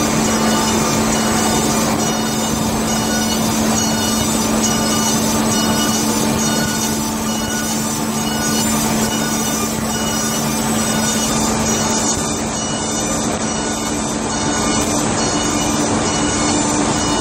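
Kolbus KM 600 perfect binder running: a steady mechanical din with a constant low drone and an even, repeating high clatter from its moving mechanism, which fades about eleven seconds in.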